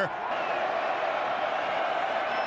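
Steady crowd noise in a football stadium, a continuous murmur with no single loud event.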